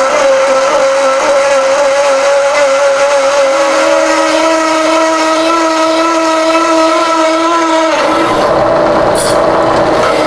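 Bimetal hole saw cutting 3/8-inch steel plate in a milling machine at slow spindle speed, making a loud, steady squealing noise. A second, lower pitch joins it about a third of the way in, and the squeal breaks up into a rougher grinding for about two seconds near the end. The noise comes from the teeth biting and throwing chips while the oiled cut is going well.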